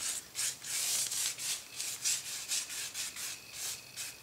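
A bristle brush scrubbing a watery PVA glue wash back and forth over a pencil-drawn board, in quick strokes about two to three a second. The wash is sealing the pencil drawing before oil painting.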